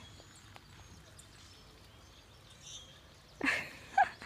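Quiet outdoor background noise with a faint high chirp about three seconds in, then a voice calls out "seventeen" near the end.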